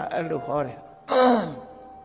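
A man's voice: a few spoken syllables, then about a second in a loud, breathy vocal sound with falling pitch, like a sigh. A soft, steady musical tone holds underneath.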